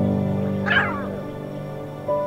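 Calm background music of sustained chords, with a lion cub giving one brief, high call that falls in pitch about three-quarters of a second in.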